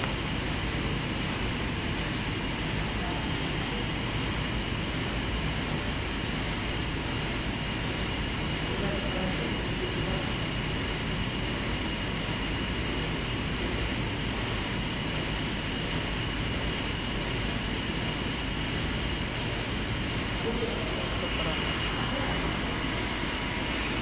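Steady background drone of a large indoor shopping hall, typical of its ventilation and air conditioning, with a faint high steady whine and faint distant voices.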